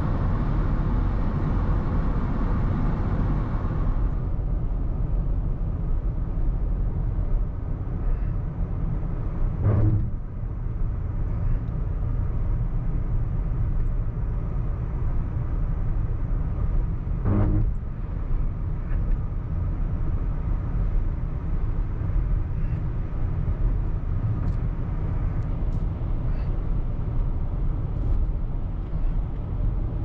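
Car interior road and engine noise while driving: a steady low rumble, with two brief louder swells about ten and seventeen seconds in.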